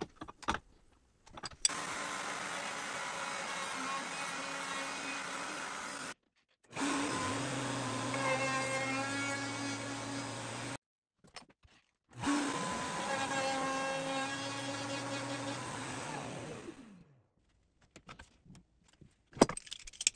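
Router on the PantoRouter running with a flush-trim bit, trimming the drilled MDF holes flush with the plywood holes behind them. It runs steadily in three stretches, each broken off abruptly, and near the end the motor winds down in pitch.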